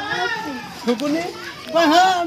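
Children's voices chattering and calling out, high-pitched, getting louder near the end, with one brief click about halfway through.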